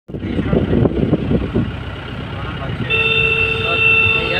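A vehicle horn sounds one steady note for about a second and a half, starting about three seconds in, over the road noise of a moving car heard from inside the cabin.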